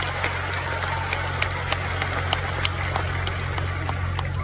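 Audience applauding, with scattered sharp claps over a steady low hum.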